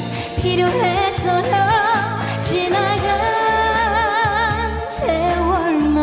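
A woman singing a Korean ballad live over a recorded accompaniment with a steady beat. She holds long notes with a wide vibrato, the longest from about three to five seconds in.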